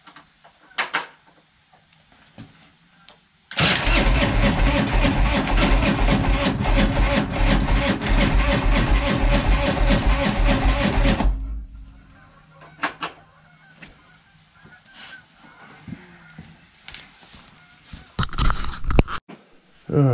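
Harley-Davidson V-twin being cranked over by its electric starter: a loud, fast, even churning that begins about four seconds in, runs for about eight seconds, then winds down and stops. The engine does not settle into running, and the spark plugs are suspect.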